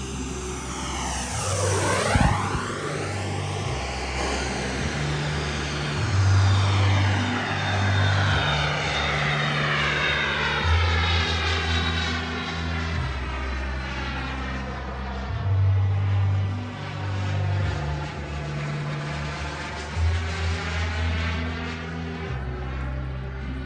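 Twin-turbine 1/6-scale model MiG-29 jet making a low pass: turbine whine and jet rush, with a swooshing sweep down and back up in pitch about two seconds in as it goes by, then a long fading rush as it climbs away. Background music with a deep bass line that changes every couple of seconds plays underneath.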